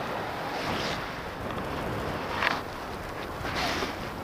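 Wind rushing over the microphone of a camera on a paraglider in flight: a steady rush of airflow, with a few brief louder swishes about a second in, midway through, and near the end.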